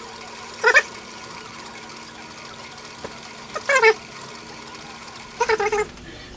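Metal lathe running steadily while a spring-loaded two-wheel straddle knurling tool rolls a fine knurl into a mild steel bar, with a steady hum underneath. Three brief louder sounds stand out, about a second in, near the middle and near the end.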